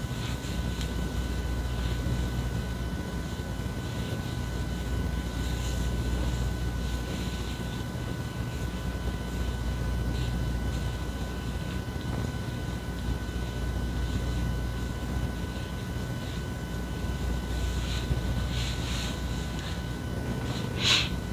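Steady low mechanical hum with a few faint high steady tones running through it. Faint brief rustles come from hands working styling milk through wet curly hair.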